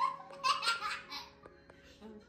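A person giggling in a few short bursts during the first second, over soft background music.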